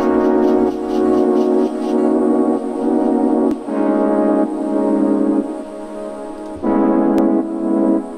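Held chords from a software instrument played on a MIDI keyboard, with a new chord every second or two. The chords are being auditioned for a slow, melancholic lo-fi hip hop beat.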